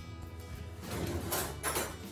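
Steady background music, with a kitchen drawer being slid open and rummaged in, giving a few scraping noises in the second half.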